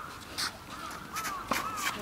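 Sharp pop of a tennis racket striking the ball about one and a half seconds in, with a lighter click earlier and faint short descending calls around it.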